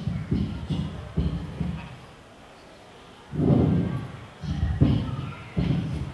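A woman's voice in short broken bursts, muffled and bass-heavy from being right at a handheld microphone, with low thuds of the microphone being handled.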